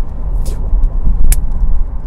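Steady low road and engine rumble inside a car's cabin while it is being driven, with one short click partway through.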